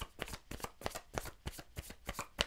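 A tarot deck being shuffled by hand: a quiet, rapid, irregular run of soft card clicks.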